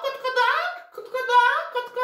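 A very high-pitched, child-like voice speaking in short gliding phrases, with words the recogniser could not make out.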